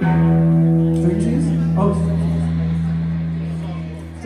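A rock band's amplified electric guitar and bass strike one chord together and let it ring, slowly fading. A voice calls out briefly over it, about a second in.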